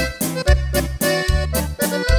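Norteño corrido instrumental break: an accordion plays the melody over a bass note on each beat alternating with strummed chords, in a steady rhythm.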